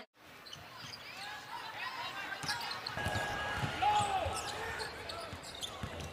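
Basketball game arena sound: a ball bouncing on the court among crowd voices, fairly quiet, starting after a brief moment of silence.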